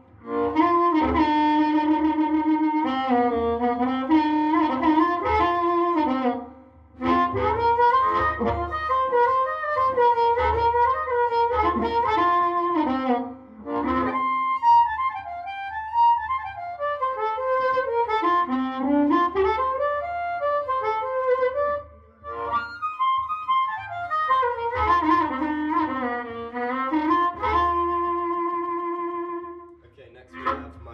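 Diatonic blues harmonica played through a Dynamic Shaker harp microphone, a solo phrase with bent notes sliding down and up in pitch. There are three short breaks between phrases, with a low hum underneath.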